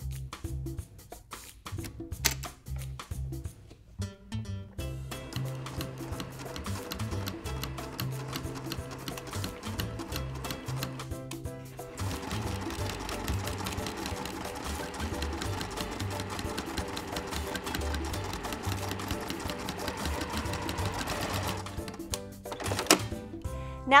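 Domestic sewing machine with a walking foot stitching rick rack onto flannel, running in steady runs, over background music.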